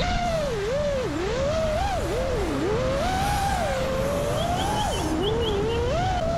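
FPV quadcopter's motors whining, the pitch sliding up and down continually as the throttle is worked.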